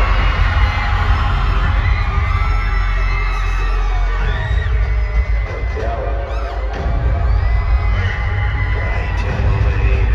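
Live concert music through a hall sound system, with a heavy bass line and a crowd cheering and shouting over it. The bass drops out for about two seconds a little past the middle, then comes back.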